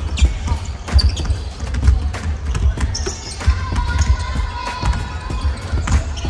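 Several basketballs bouncing on a hardwood gym floor, irregular overlapping dribbles and bounces reverberating around a large sports hall.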